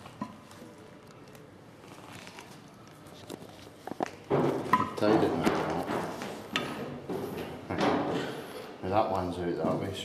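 Indistinct talking, loudest from about four seconds in, with a few light knocks and clicks as a wooden shuttle stick is worked through the warp strings of an upright hand loom.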